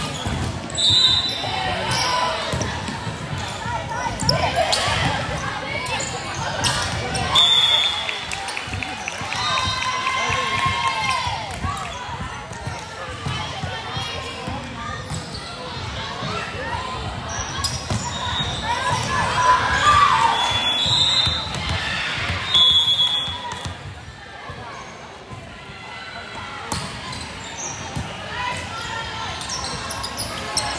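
Busy volleyball gym in a large hall: many overlapping voices of players and spectators calling and cheering, with ball hits and bounces on the hardwood floor. Several short high referee whistle blasts sound through it.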